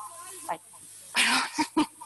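A woman's voice: a short 'ay', then a loud breathy hiss about a second in, and a few brief voice sounds.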